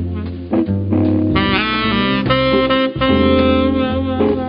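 Live jazz quartet: a saxophone plays the lead line, moving into long held notes about a second and a half in, over double bass, drums and guitar.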